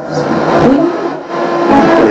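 Lasonic TRC-931 boombox radio being tuned: the music breaks into sliding, warbling tones as the tuning knob is turned, then music comes in clear again near the end.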